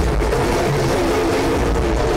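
Hip-hop backing music in a gap between rapped lines, with a BMW car engine running beneath it.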